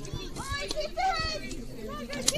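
Players' voices calling out across a football pitch, faint and distant, with higher voices overlapping.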